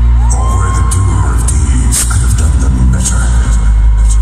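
Loud arena concert intro music with a deep, sustained bass, and a crowd cheering and screaming over it. A rising whistle-like tone comes in about a third of a second in and holds for about a second.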